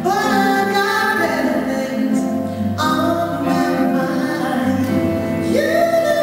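A woman singing a slow ballad live at a microphone over a jazz band with drums and keyboards. Three sung phrases, each opening on a held note: at the start, about three seconds in, and near the end.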